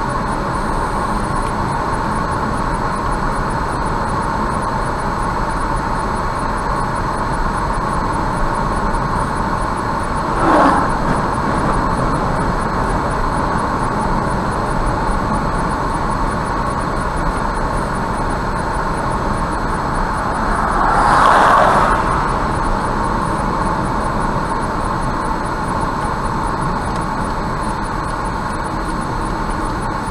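Steady road and engine noise of a car driving on a highway at about 70 km/h, heard from inside the cabin. There is a short burst of noise about ten seconds in, and a louder swell lasting a second or two around twenty-one seconds in.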